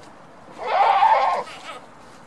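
A goat bleating once, a single wavering call of about a second near the middle. It is calling after its keeper, who has left the camera at the fence and walked away.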